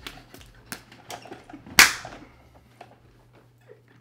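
A few sharp clicks and knocks, the loudest a single sharp smack a little under two seconds in.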